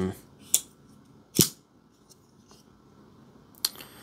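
Three sharp metallic clicks from a CJRB Scoria folding pocket knife being worked in the hands, the blade and its lock snapping; the loudest comes about a second and a half in, and the last, near the end, rings briefly.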